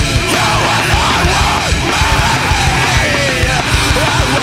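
Loud post-hardcore band recording: distorted guitars and fast drums with yelled vocals.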